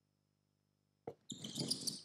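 Basketball shoes squeaking on a court floor as players sprint and change direction, starting about a second in after a single short knock.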